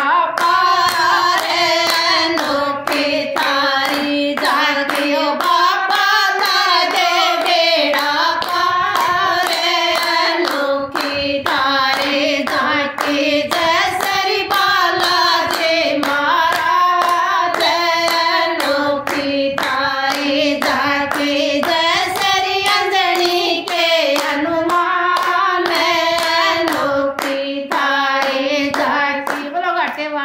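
A group of women singing a devotional Hindu bhajan together, clapping their hands in a steady beat.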